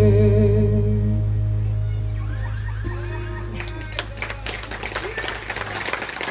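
A live band's final chord ringing out and fading: a long held bass note under sustained fiddle and guitar notes. About three and a half seconds in, audience clapping starts and carries on.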